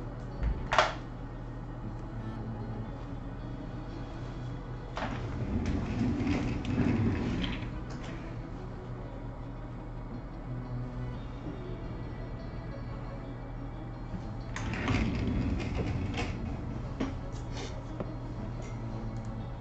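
Low background music over a steady room hum, with a sharp click about a second in. Twice, for a few seconds each, a person's chair and clothing creak and rustle as he gets up from the desk and later sits back down.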